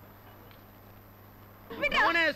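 A faint steady hum, then near the end a loud, high-pitched, quavering cry begins.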